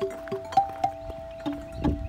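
Outdoor metal tube chimes struck with two mallets, about six notes in two seconds, each ringing on under the next. Near the end comes a duller, lower knock.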